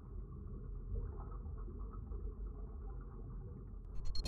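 A steady low rumble with a faint flickering texture above it, an underwater-style ambience.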